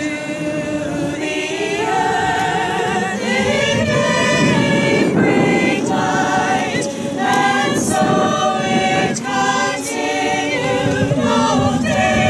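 Mixed choir of men's and women's voices singing a Christmas carol, holding sustained chords that change about once a second.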